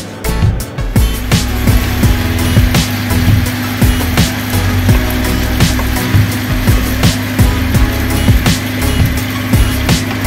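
Background music with a steady beat, about two beats a second, over a steady low hum.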